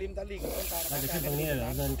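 A steady high hiss starting about half a second in, under a man's voice talking.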